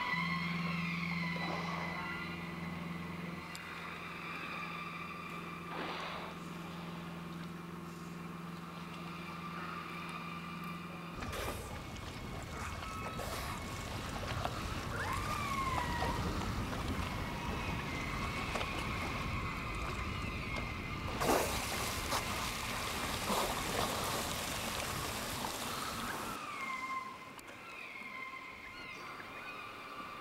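Orca (killer whale) calls: high, squealing calls whose pitch droops at the end, recurring every several seconds over a held tone. A steady low motor hum runs under the first part, then gives way to a rushing noise of boat and water, with a brighter hiss for several seconds near the end.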